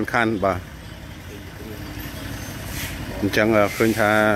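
A motor vehicle's engine running, growing louder over about two seconds between stretches of speech.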